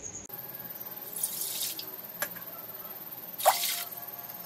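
Water poured from a steel tumbler into an empty stainless-steel cooking pot, in two short pours about two seconds apart, with a single sharp click between them.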